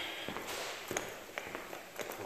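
Footsteps on a hard laminate floor: a few light, sharp steps about half a second apart.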